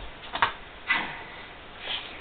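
A few soft knocks and a thump, with some rustling, as a cockatoo scrambles on a cushioned couch and grabs a plush toy. There are two quick knocks about half a second in and a louder thump just before the second mark.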